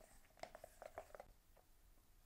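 Near silence, with a handful of faint, short clicks in the first second or so from a wooden stir stick against a plastic mixing cup of pigmented liquid foam.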